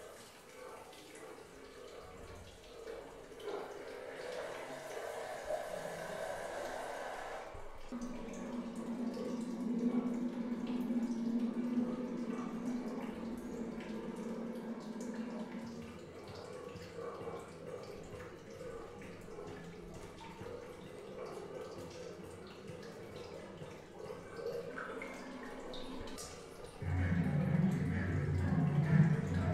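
Water dripping and trickling at a sink, with a steady low drone that sets in about eight seconds in and stops about halfway through. Near the end a louder, low-pitched sound starts.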